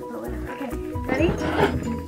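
Background music with steady held notes, and a girl's voice saying "ready" about a second in.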